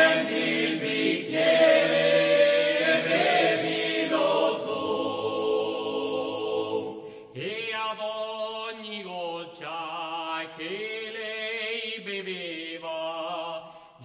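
All-male folk vocal group singing a traditional ballad a cappella: a loud, full held chord of several voices that thins out, then after a short break about seven seconds in a single male voice carries the tune with a wavering vibrato.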